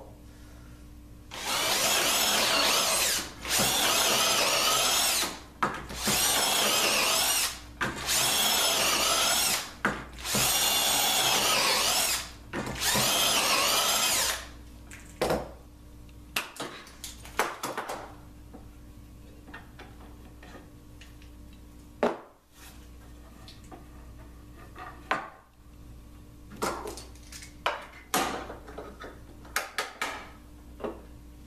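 Cordless drill boring dowel holes through a metal dowelling jig into a wooden table leg: six bursts of about two seconds each with short pauses between, the motor's pitch wavering under load. After that, scattered clicks and knocks as the jig and its clamp are handled.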